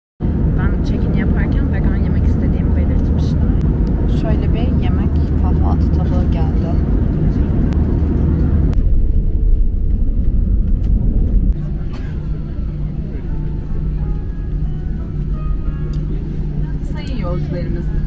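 Airliner cabin noise during landing: a loud, steady rumble from the jet and runway for the first ten seconds or so. About eleven seconds in it drops to a quieter, steady engine hum as the plane slows on the runway, with voices heard faintly over it.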